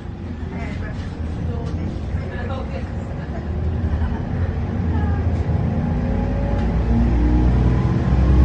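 Optare Solo M880 midibus's diesel engine and drivetrain running on the move, heard from inside the passenger saloon: a low drone that grows louder and rises in pitch through the second half as the bus picks up speed.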